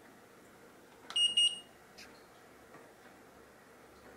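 Floor-heating wall controller switched on: a button click, then a short high-pitched electronic confirmation beep about a second in, and a faint click shortly after.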